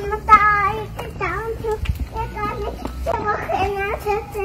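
A toddler's high-pitched voice babbling in several short sing-song phrases with brief pauses between them.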